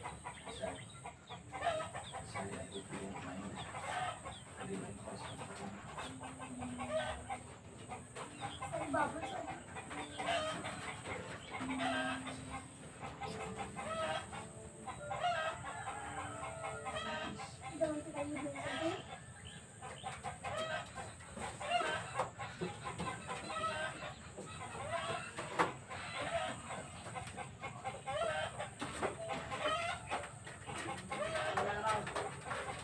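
Chickens clucking in short, repeated calls all the way through, with a rooster crowing among them, over a faint steady high-pitched tone.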